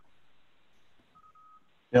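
Faint electronic beeps: a thin, steady high tone sounds briefly at the start and again as two short pulses about a second in, over near silence.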